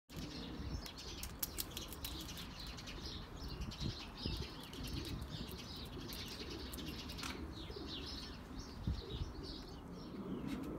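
Small birds chirping over and over, with a few sharp clicks in the first two seconds and a steady low rumble underneath.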